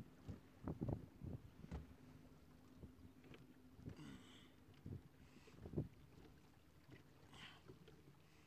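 Faint steady hum of a small fishing boat's motor running slowly, with a few scattered knocks and a brief hiss about four seconds in.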